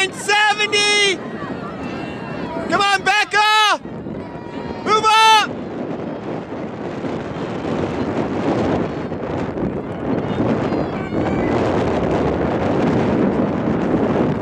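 A high-pitched voice calling out loudly in three short bursts over the first five seconds, then steady wind buffeting the microphone for the rest.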